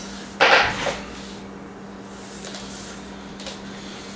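A short, loud burst of cloth rustling close to the microphone about half a second in, as a shirt sleeve is pulled up over the upper arm, over a steady low hum.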